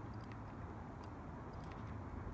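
Quiet outdoor background: a low steady rumble with a few faint, short high ticks scattered through it.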